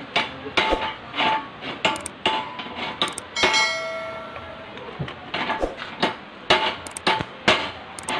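Hammer strikes on metal, about two a second, each with a short metallic ring. About three and a half seconds in, a longer ringing tone with several overtones fades out over about a second.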